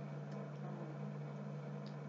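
Low steady hum with faint hiss: room tone, with no clear handling sound standing out.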